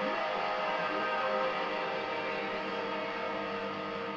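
Electric guitar playing a rock song, a steady, dense run of ringing chords and held notes.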